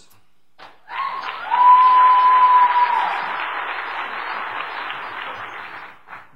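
An audience applauding, starting about a second in, loudest early on and slowly tapering off, with a single steady held note sounding over it for about a second and a half.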